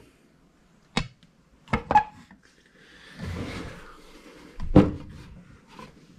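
Heavy metal power-supply case being handled and turned on a desk mat: a few light knocks, a scraping rustle about three seconds in, then a heavier thump near five seconds as it comes down on the mat.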